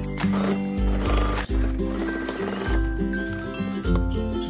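Background music, with a Brother sewing machine stitching under it for about two and a half seconds, stopping a little past halfway.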